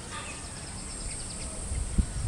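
Outdoor garden ambience: faint bird calls and a steady high insect drone over a low rumble, with a single thump near the end.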